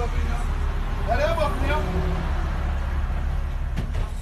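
City bus engine running with a steady low rumble, heard from inside the passenger cabin. A voice speaks briefly about a second in, and a sharp click comes near the end.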